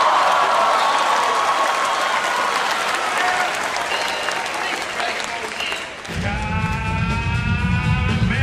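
Audience applauding, the clapping tailing off over about six seconds; then a rock song with a heavy beat starts abruptly.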